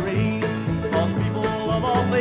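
Bluegrass band playing, banjo and guitar picking over a bass line.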